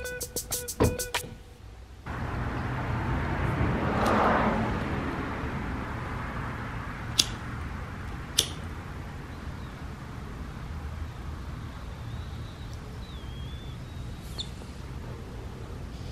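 Music with a beat stops about a second in and is followed by a moment of quiet. Then a steady low background hum begins, with a noisy whoosh that swells and fades about four seconds in, two sharp clicks a second apart, and a faint high wavering chirp near the end.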